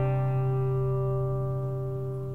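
An acoustic guitar chord left ringing, its notes holding steady and slowly fading.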